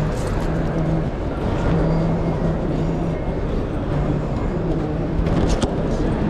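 Steady background noise of a busy walkway with a low rumble, over which a low voice drones in held notes. A few short clicks come about five and a half seconds in.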